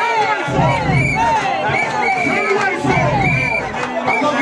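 Party crowd cheering and shouting together, many voices overlapping.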